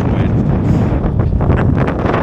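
Strong wind buffeting the camera's microphone: a loud, steady rumble with gusts.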